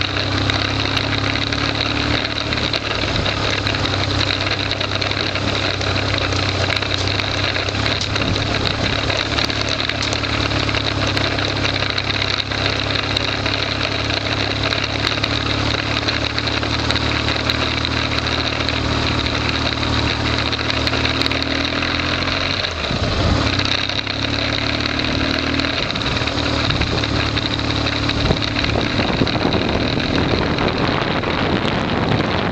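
Motorcycle engine heard from on board while riding along a gravel road, running at a steady pitch. The engine note breaks briefly about three-quarters of the way through, then settles back to the same steady run.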